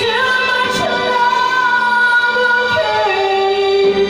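A woman singing a slow rock ballad into a microphone over backing music, holding long notes. The pitch steps down about three seconds in.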